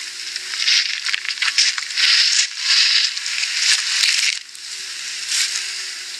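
Harsh crackling, rustling noise played back through a small device speaker, thin and without any low end, pulsing in loudness and easing off a little about four and a half seconds in.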